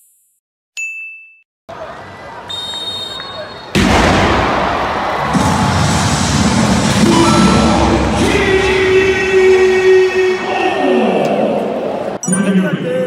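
A short sound-effect ding about a second in, then from about four seconds a sudden, loud, dense stadium crowd noise with sustained singing or music tones over it.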